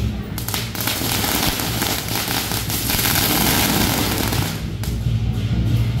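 A string of firecrackers going off in a fast, dense crackle for about four seconds, drowning out the procession's band music, which comes back in near the end.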